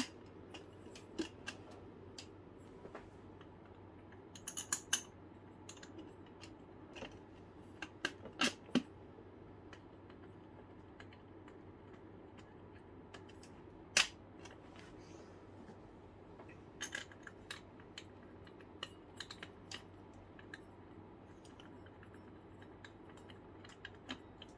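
Scattered light clicks and metallic knocks of a stainless steel shield bowl and plastic fuel-filter parts being handled and seated together by hand, with one sharper knock a little past halfway.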